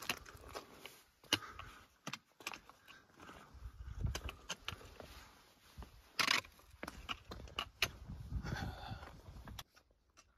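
Footsteps on loose talus: boots crunching over rock, with stones clicking and knocking against each other at an uneven pace.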